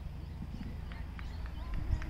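Low, gusty rumble of wind on the microphone, with a few faint short clicks about a second in.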